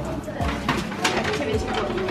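Indistinct, murmured voices in a busy room, with short crackles of paper as an activity booklet is handled.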